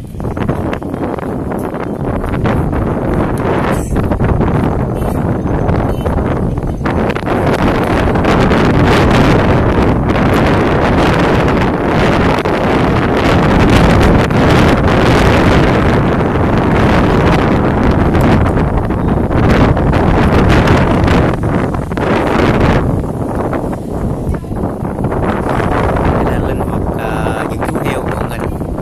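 Wind buffeting the microphone: a loud, uneven rush of noise that swells through the middle and eases near the end.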